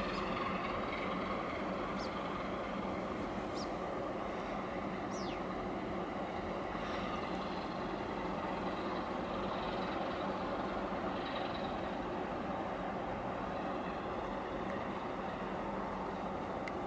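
Steady engine drone mixed with wind and water noise, with a few brief high chirps in the first five seconds.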